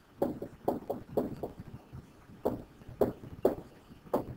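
Stylus tapping and clicking on a tablet screen while handwriting a word: about a dozen short, irregular taps, with a pause of about a second in the middle.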